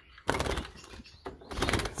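Two short, rustling handling noises from the sliding feeder drawer of a wooden bird cage, one about a quarter second in and another near the end.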